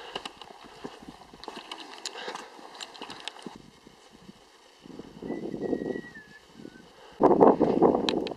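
Footsteps on a rocky trail: boots knocking and scraping on loose stones in an irregular patter through the first half. Gusts of wind on the microphone come about five seconds in and again near the end.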